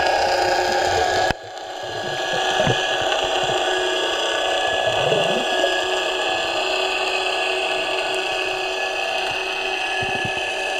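Underwater ambience picked up through the camera housing: a steady hum made of several held tones over a low rumble. It drops sharply about a second in, then builds back up over the next second.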